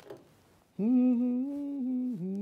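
A woman humming a tune: after a brief pause, a long held note starts just under a second in, with a slight waver.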